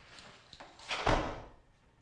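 A door swinging, one swish ending in a low thud about a second in.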